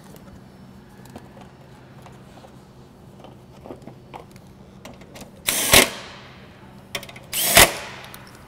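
A cordless drill/driver run in two short bursts, driving screws to fasten a plastic fan shroud onto an aluminum radiator, after a few light knocks of the shroud being set in place.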